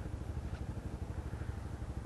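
Honda motorcycle engine running at low, steady revs, a low rumble with a quick even pulse, as the bike waits at a junction.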